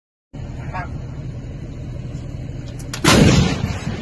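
A towed artillery howitzer firing a single round about three seconds in: one sudden, very loud blast whose low rumble dies away over about half a second, over a steady low background rumble.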